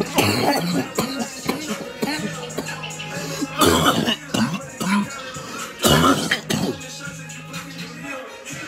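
A man coughing in rough bouts after drawing on smoke, loudest about four and six seconds in, over hip hop music playing in the background.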